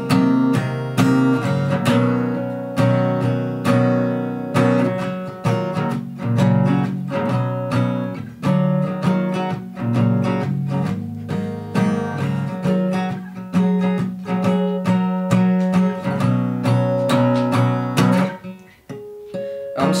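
Acoustic guitar strummed in an instrumental passage of chords, with no singing; the playing dips briefly quieter near the end.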